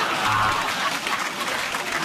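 Studio audience applauding, with a short steady tone about a quarter of a second in.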